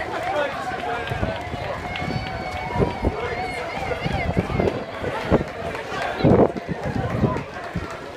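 Footsteps of a large crowd of runners on a tarmac road, mixed with many voices talking and calling among the runners and onlookers. One louder sound close to the microphone stands out about six seconds in.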